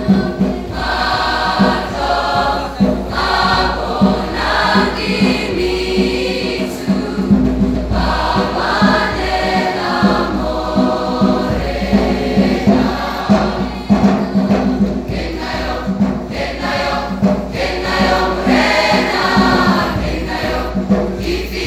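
A large mixed school choir singing in harmony, many voices together in a lively, rhythmic song.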